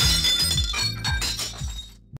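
Glass window shattering, heard as a sound effect: the shards ring and clink as they fall, and the crash fades out steadily.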